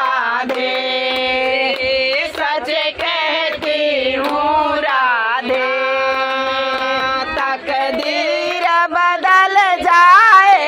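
A group of women singing a Hindi devotional bhajan to Krishna together in held, sliding melodic lines, accompanied by hand clapping.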